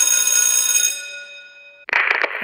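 School bell ringing loudly and steadily, then stopping about a second in and dying away. A sudden loud sound cuts in just before the end.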